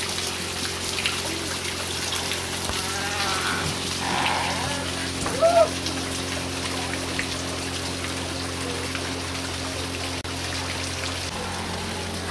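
Water spattering and trickling steadily as it pours from bamboo pipes into a wooden trough, heard as an even rain-like patter. A few short pitched squeaks break in around the middle, the loudest about five and a half seconds in.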